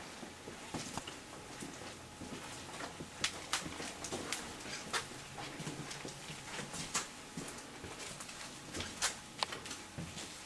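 Irregular light clicks and knocks over a faint steady hum: footsteps on a hard floor and handling noise from a handheld camera as a person walks a corridor, with a few sharper knocks about three, five, seven and nine seconds in.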